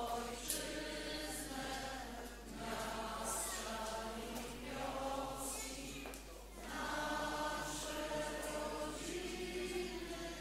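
Many voices singing a hymn together in long, held phrases, with short breaks between phrases.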